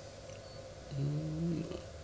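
A man's drawn-out hesitation sound, a held "ehh" of under a second, starting about a second in and easing off at the end, over faint room tone.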